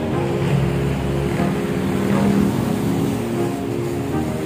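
Road traffic with a motor vehicle engine passing, heard together with background music.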